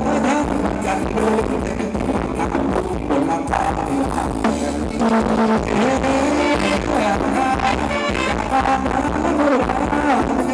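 Live band playing a Thai ramwong dance song, loud and continuous, with a wavering melody line over a steady low beat.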